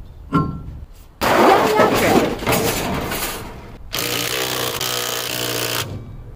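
Cordless DeWalt drill with a lug-nut socket running lug nuts on a car wheel: a steady motor whir through the last two seconds or so. Before it come a brief clink and a louder, rougher stretch of noise.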